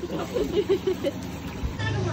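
Indistinct voices of a few people talking briefly over background noise; a steady low hum comes in near the end.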